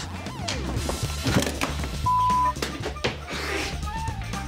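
Background music under laughter, cut through about two seconds in by a single steady half-second beep: a censor bleep over a word.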